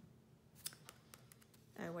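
A few faint, sharp clicks and taps of paper and fingernails as hands handle the layered paper tags on a handmade journal page.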